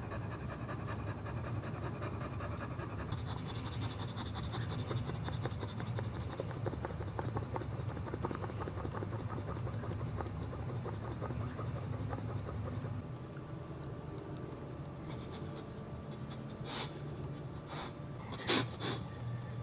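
Boxer dog in labor panting rapidly and steadily through contractions, the panting easing and growing quieter about two-thirds of the way through.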